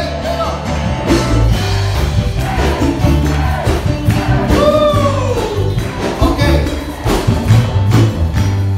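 A live band plays upbeat Latin-style praise music with hand drums and percussion, and a man sings or calls out into a microphone over it, his voice gliding up and down in pitch at the start and again about five seconds in.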